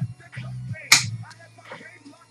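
A single sharp slap about a second in as trading cards are set down on a tabletop stack, with background music playing underneath.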